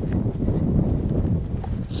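Low, uneven rumble of wind buffeting and handling noise on a handheld camera's microphone, with footsteps, while walking outdoors.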